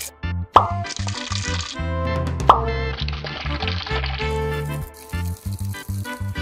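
Upbeat background music with a steady bass line and beat, broken by two quick rising "plop" sounds, about half a second in and about two and a half seconds in.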